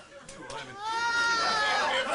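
A woman's voice sings a long wordless note that slides up and then holds, starting about a second in after a quieter moment with a couple of light knocks.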